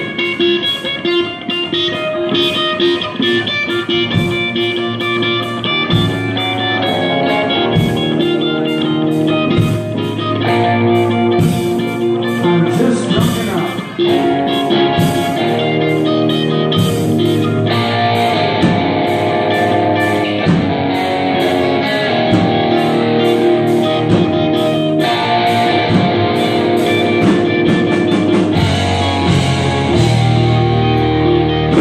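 Live rock band playing a song: electric guitars, bass guitar and drum kit, loud and continuous, filling out a few seconds in and growing fuller again about halfway through.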